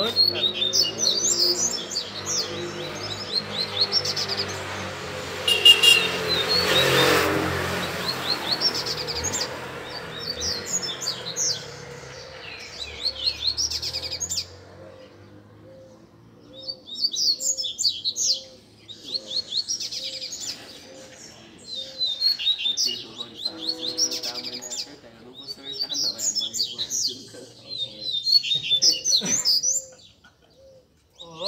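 Several caged male double-collared seedeaters (coleiros) singing in overlapping runs of quick, high chirping phrases, with short pauses between bouts. A low hum runs under the first half, and a louder noisy swell comes about seven seconds in.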